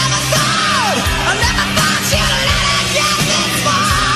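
Heavy metal song recording: a full rock band with drums keeping a steady beat about twice a second. A high lead line slides down in pitch about a second in and wavers with vibrato near the end.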